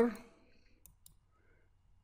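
Two faint computer mouse clicks about a second in, a right-click on a web page element followed by a click on Inspect, after the tail of a spoken word.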